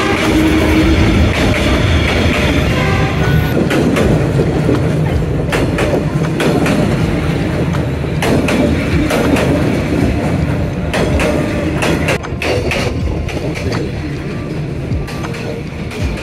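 Passenger train passing at very close range, a steady heavy rumble with the wheels clicking over the rail joints. It eases slightly near the end.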